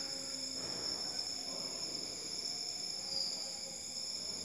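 Quiet background with steady, high-pitched ringing tones and faint hiss, unchanging throughout.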